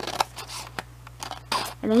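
Scissors cutting through a folded sheet of paper: several separate sharp snips as the blades close along a traced line.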